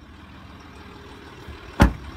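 A car door shutting with one heavy thud near the end, over the steady low hum of the Ford Territory's engine idling.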